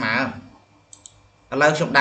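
Two quick, faint clicks of a computer mouse about a second in, between stretches of a man's narration.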